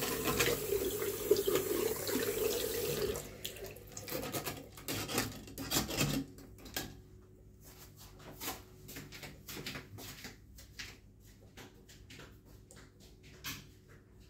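Tap water running into a bathroom sink basin and down the plughole, steady for about three seconds and then dying away as the tap is turned off. After that come scattered faint clicks and taps.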